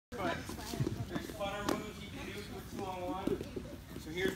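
Voices talking in an echoing gym, with a few short sharp knocks among them.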